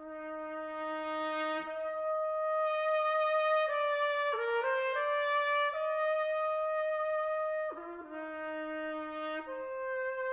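Solo trumpet playing a slow, lyrical melody in long held notes: a leap up about two seconds in, a few shorter notes moving in the middle, a drop back to the low note near the end, and a step up again just before it finishes.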